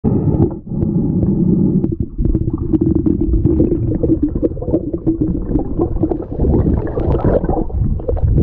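Muffled underwater rumble and gurgling from a submerged action camera as a snorkeller moves along the seabed, with many small clicks and a low droning tone through the middle.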